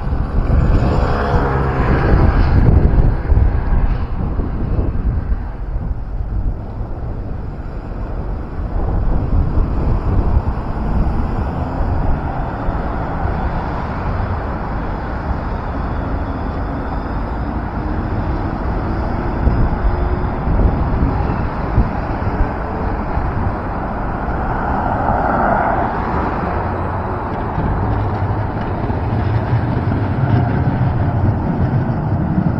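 City street traffic: cars and trams passing on a wide road, with a low rumble throughout. A vehicle pulling away gives a rising whine in the first few seconds.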